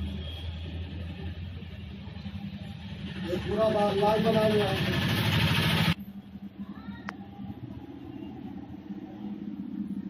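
Indistinct voices over low room noise. About three seconds in, a louder noisy stretch with a wavering pitched sound begins, and it cuts off abruptly at an edit about six seconds in.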